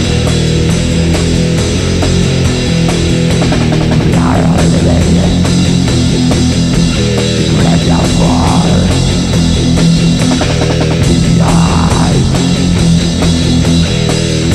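Studio recording of a black metal band: distorted electric guitars and a drum kit playing loud and without a break.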